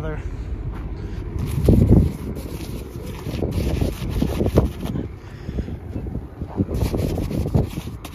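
Wind buffeting the microphone, with a gloved hand rubbing and wiping frost and snow off a trailer's plastic tail light lenses in short, scratchy strokes. The wind gust is loudest about two seconds in.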